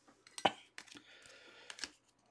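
A few light clicks and clacks of hard plastic trading-card holders knocking together as they are handled and stacked, the sharpest about half a second in.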